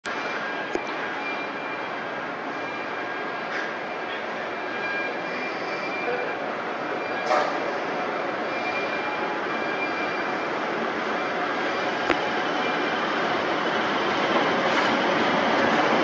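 Class 60 diesel locomotive hauling a freight train as it approaches, its rumble growing steadily louder, with a few sharp clicks along the way.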